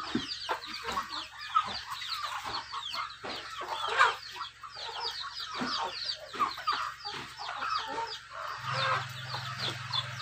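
Chickens clucking and cheeping while they feed, with a dense stream of short, high, falling calls. A low steady hum comes in near the end.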